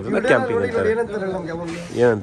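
A man talking, with a short hiss near the end.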